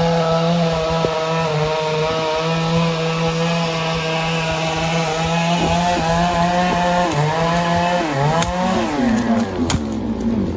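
A small engine running steadily, its pitch rising and then falling about eight seconds in, with a few sharp knocks near the end.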